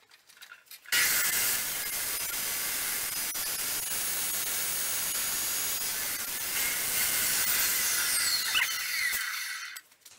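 Porter-Cable PCE700 14-inch abrasive chop saw cutting through half-inch steel rebar: a loud, harsh, steady grinding of the abrasive wheel against the steel that starts suddenly about a second in, runs for about eight seconds and dies away near the end.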